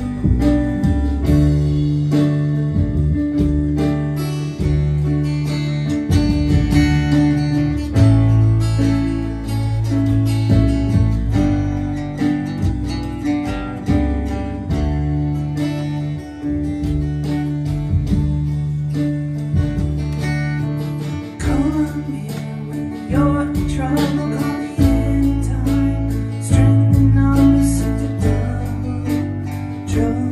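A small live band of acoustic guitar, upright double bass, keyboard and drums playing a song, with the bass notes held and changing every second or two under a steady beat.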